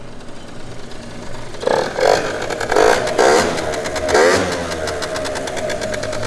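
Two-stroke Derbi GP1 scooter engine idling, blipped in a few short revs between about two and four and a half seconds in, then settling back to idle. Its exhaust is leaking at a cracked weld.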